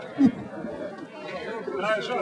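Several people talking indistinctly at once, with one short louder voice sound a moment in.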